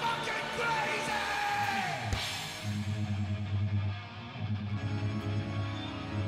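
Live heavy metal band: a singer's long, held, yelled note that slides steeply down in pitch about two seconds in, then distorted electric guitar and bass playing a low, chugging riff with drums.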